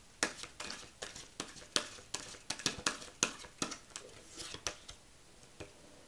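A deck of oracle cards being shuffled by hand: quick, irregular crisp clicks and slaps of card on card, several a second, thinning out about four and a half seconds in.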